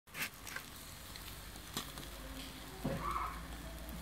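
Whole sardines grilling over hot charcoal: a steady faint sizzle with a few sharp crackling pops in the first two seconds. A short, louder indistinct sound comes about three seconds in.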